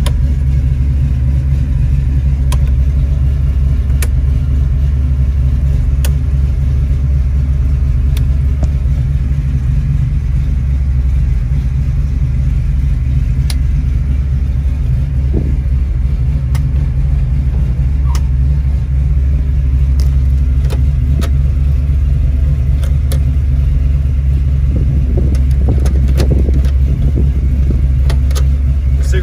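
Ford Boss 302 V8 idling steadily, heard from inside the car's cabin, with a few light clicks over it.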